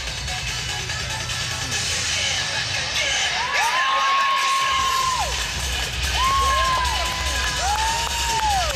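Cheerleading routine mix music with a pulsing bass beat that cuts out for about a second around halfway, under crowd cheering. Several long whoops that rise, hold and fall come through in the second half.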